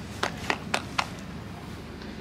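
Four short, sharp clicks in quick succession, evenly spaced about a quarter of a second apart, in the first second.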